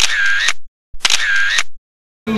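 The same short sound effect played twice, about a second apart. Each is a click followed by a brief whirring tone that dips slightly in pitch and comes back, then cuts off into dead silence.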